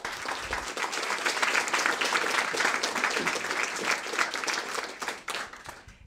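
An audience applauding, which dies away over the last second or so.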